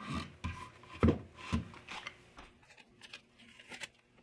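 Bamboo knife block handled and knocked against a wooden workbench: several wooden knocks in the first two seconds, the loudest about a second in, then lighter clicks and rubbing.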